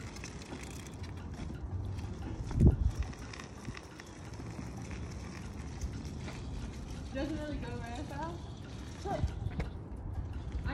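Knee scooter's small wheels rolling over pavement, a steady low rumble, with one heavy thump about two and a half seconds in. A voice is heard briefly near the end.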